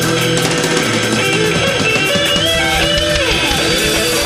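Live rock band playing an instrumental passage, with electric guitar lines that bend in pitch over bass and drums.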